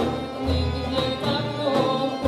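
Live ensemble music: a violin playing the melody over accordion accompaniment, with a deep bass note that drops out briefly about every second and a half.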